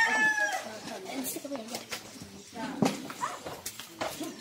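A rooster crowing, its long held final note ending about half a second in. Then quieter background sounds, with one sharp knock a little before three seconds.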